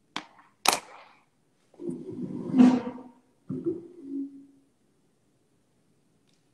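Two sharp clicks, then a man's voice making two wordless vocal sounds: the first longer and louder, about a second and a half, the second shorter and ending on a held note.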